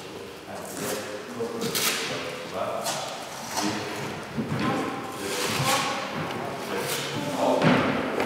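Boxing punches landing with dull thuds, about eight irregular blows roughly a second apart, as in pad or bag work during a training session.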